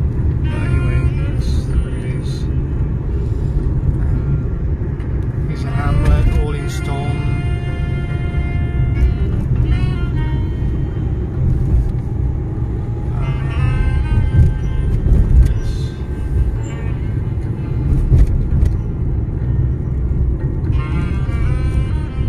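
Steady low rumble of a car driving, engine and road noise heard from inside the cabin. Every few seconds music and voice sounds rise briefly over it.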